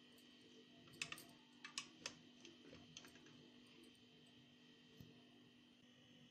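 Faint clicks of metal tongs against a perforated steel colander as chicken pieces are turned over, about six light clicks in the first three seconds and one more near the end, over a faint steady hum.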